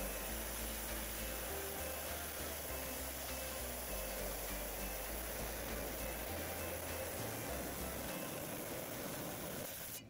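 Water-cooled lapidary saw cutting through a rough agate nodule, a steady grinding hiss with no change in pitch. Quiet background music with a slow bass line plays under it.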